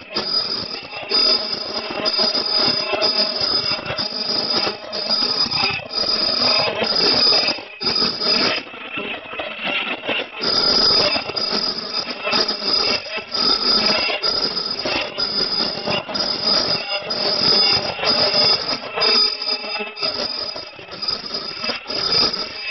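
Automatic D-cut nonwoven bag making machine running, a high-pitched whine pulsing about once a second with the machine's cycle over steady mechanical running noise. The whine drops out for about two seconds midway, then resumes.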